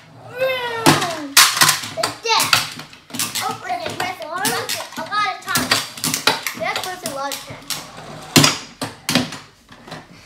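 Children making wordless excited and engine-like vocal sounds while Revvin' Action toy cars are pressed down and released on a wooden table. Sharp clicks and clatter from the toy cars come in clusters, loudest about a second in and again near the end.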